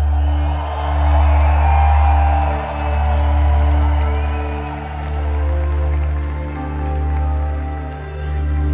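Slow live concert music over an arena PA, heard from the audience, with a loud deep bass drone and long held tones. The crowd cheers and whoops over it, most strongly in the first few seconds.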